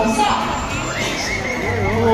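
A bird of prey's high, quavering call, held for most of a second from about a second in, over a voice and background music.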